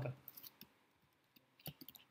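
Faint clicks of computer keyboard keys being typed: a quick run of several keystrokes in the second half.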